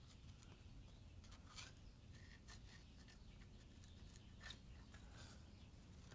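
Near silence, with faint scrapes and ticks of a screwdriver blade working JB Weld epoxy into the tapped threads of a head-stud hole in an engine block.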